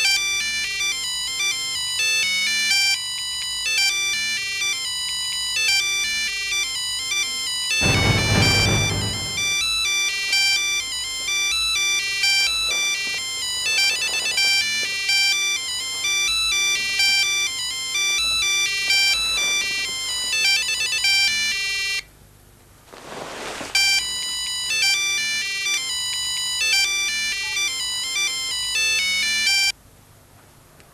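Mobile phone ringtone: a repeating electronic melody playing on and on unanswered, with a brief break about two-thirds through, then cutting off abruptly near the end as the call is answered. A loud low rushing swell sounds once about eight seconds in.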